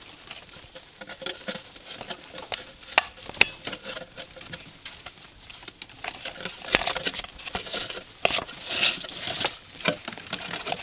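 Baby rats scrabbling at a cardboard box and pushing through its slot, their claws pattering and scratching on the cardboard and the tabletop, with scattered sharp knocks. The scrabbling gets busier and louder in the second half.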